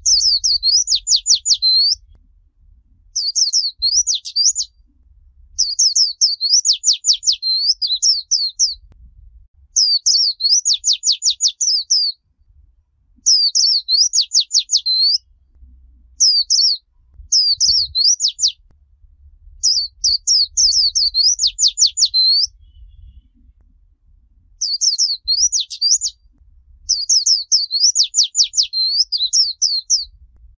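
White-eye (vành khuyên) singing in the 'líu chòe' style: about ten high-pitched song phrases of rapid warbling trills, each a second or two long, separated by short pauses.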